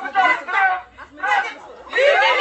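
People talking, close to the phone's microphone: speech and chatter, with a short lull about a second in.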